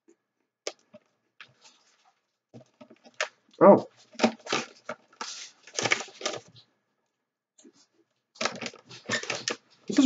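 Sparse crunches of baked pea crisps being chewed, then louder crackling bursts from the snack bag being handled, with a brief vocal sound about three and a half seconds in.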